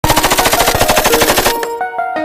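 A rapid burst of machine-gun fire used as an intro sound effect, strokes in quick even succession for about a second and a half. It then stops suddenly and a melody of single held notes from the song's beat begins.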